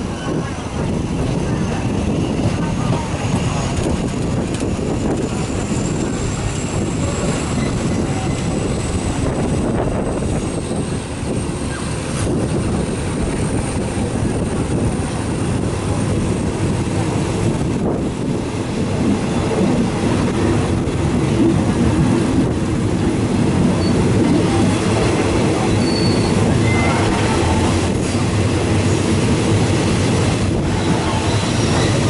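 A moving passenger train heard from an open carriage window: the steady rumble of wheels on the track, getting louder in the second half. A faint high whine rises slowly over the first half.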